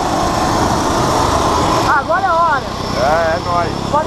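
The engine and propeller of a single-engine jump plane running close by: a steady, loud noise. A voice-like pitched sound cuts in over it twice in the second half.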